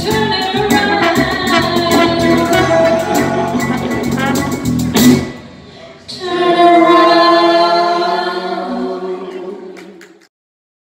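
Live band with violin, bass guitar and vocals playing the end of a song: full band with a steady beat up to a loud final accent about five seconds in, then a long held closing note that slowly fades away.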